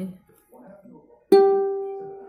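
A single plucked string of a three-string kentrung (small ukulele) rings out partway through and slowly dies away, a steady clear note: the third string, just tightened, now sounding G in tune.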